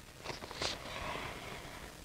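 Quiet room with a couple of faint, short sounds from paper perfume testing strips being handled and passed over.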